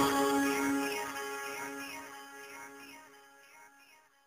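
A song fading out: the deep bass stops at the start and the remaining sustained notes die away steadily over about four seconds.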